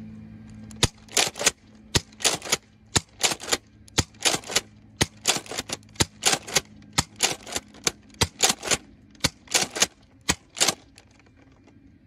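Nerf N-Strike Elite Alpha Trooper CS-12 pump-action dart blaster being pumped and fired over and over: sharp plastic clacks in quick clusters, about one cluster a second, each cluster one dart shot.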